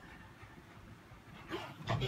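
A dog making a few short sounds near the end, after a quiet stretch.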